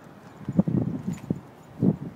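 A pet animal making short low sounds: a run of them about half a second in and a louder single one near the end.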